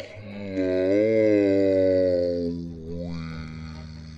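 A long, low pitched sound that swells, bends in pitch and then slides down over a steady low drone, with a short upward glide near the end.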